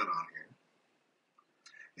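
A man's voice finishing a short phrase, then about a second of near silence with one faint tick, before a soft sound just ahead of speech resuming.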